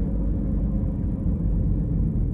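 Steady low rumble of a car's road and engine noise heard inside the cabin of a moving car.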